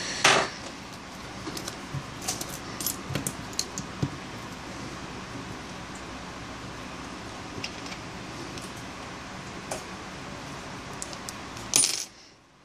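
Scattered light clicks and taps of a BlackBerry Q5's plastic parts being handled as a SIM card is fitted, with a sharper click just after the start and another near the end, over a steady hiss.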